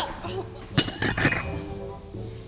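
China teacups and saucers clinking on a table: one sharp clink just under a second in, then a quick cluster of clinks right after, over background music.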